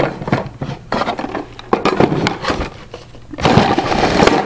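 Small oak boxes and the containers inside them being handled in a wooden camp kitchen box: a run of irregular wooden knocks and clatter, with a longer scrape of wood sliding on wood about three and a half seconds in.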